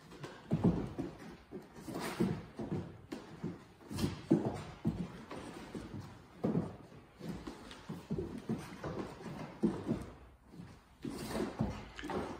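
Hands and feet thudding and scuffing on a wooden gym floor during plank exercises, in irregular knocks every second or two.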